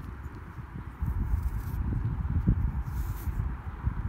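Uneven low rumbling on the microphone, louder from about a second in, with a couple of brief faint rustles.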